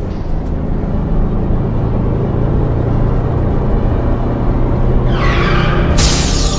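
Trailer sound design: a loud, steady low rumble that builds over the first second, then a rising sweep near the end leading into the music.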